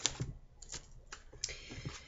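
A few light, irregular clicks and taps from hands handling something below the frame, with a short soft rustle about one and a half seconds in.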